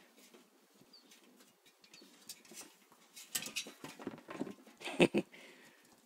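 Pit bull puppy's paws and claws knocking and scraping on a glass patio table and chair as she scrambles down with a toy football. A run of clicks and scrapes starts a little past halfway, with one sharp knock, the loudest sound, about five seconds in.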